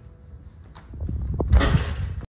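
Heavy footsteps thudding on a wooden floor close to the microphone, with a click about three quarters of a second in, then a loud rustling scrape in the last half second.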